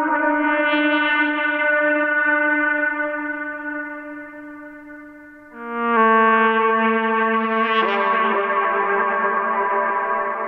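Saxophone recording drenched in reverb to sound atmospheric and big, playing long held notes. The first note fades away over the first half, a lower note comes in just before six seconds, and the line moves to another note near eight seconds.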